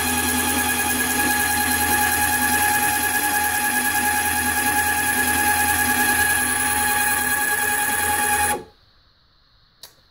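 Electric nose gear actuator for a Long-EZ, its battery-powered motor driving the screw with a steady whine. It cuts off suddenly about eight and a half seconds in, where the limit microswitch stops the down travel, followed by near silence with one faint click.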